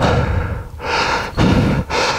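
A man breathing hard, three heavy breaths in and out in two seconds, with a low wind rumble on the microphone.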